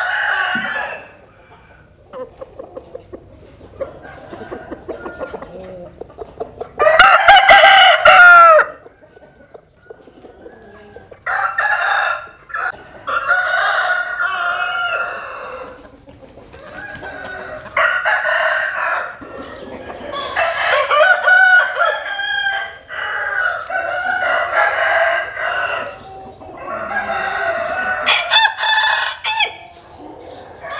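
Several roosters crowing one after another, the calls coming closer together and overlapping in the second half, with one loud crow close by about seven seconds in. Quieter calls fill the gaps between crows.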